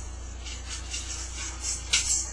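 A few faint, light taps and jingles from a tambourine worked by the player's foot, spaced unevenly, over a steady low hum.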